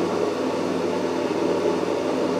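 A steady mechanical drone made of several held tones over an even hum, unchanging in level and pitch.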